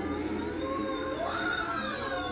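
Background television sound: a voice whose pitch glides slowly up and down, over a steady low hum.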